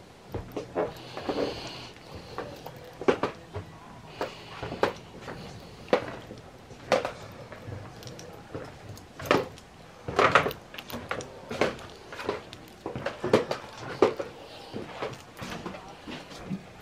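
Irregular knocks and thuds of footsteps on a wooden floor, about one a second, over faint background music.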